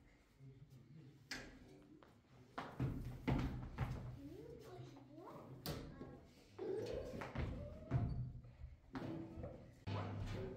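A handful of dull, irregularly spaced thuds from children skipping rope barefoot on a carpeted floor, mixed with children's voices and music.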